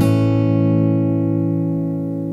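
Acoustic guitar strums one last chord right at the start and lets it ring, slowly fading: the closing chord of an acoustic folk-pop song.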